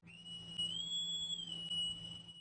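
Synthetic transition sound effect under a chapter title card: a thin whistle-like tone that bends up a little in the middle and back down, over a faint low hum.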